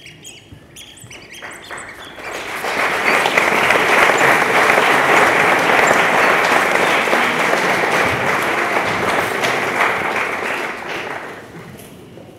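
Theatre audience applauding: the clapping builds about two seconds in, holds strongly, and dies away near the end.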